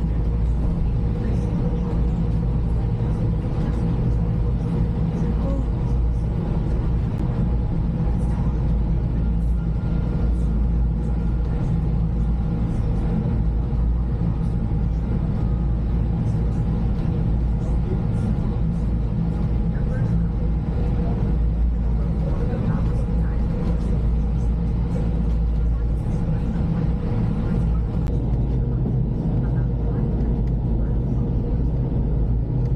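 Steady low rumble of a fast ferry's engines heard inside the passenger cabin, with a few thin steady tones running over the drone.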